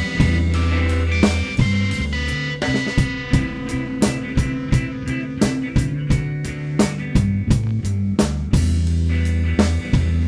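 Rock music with guitar, bass and drum kit. A deep, held bass note drops out about a second and a half in, leaving a busier stretch of drum hits, and returns near the end.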